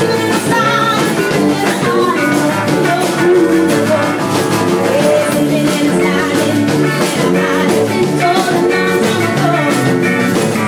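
Live rock 'n' roll band playing at full volume: a woman singing lead over electric guitar and drum kit, with a washboard scraped in rhythm.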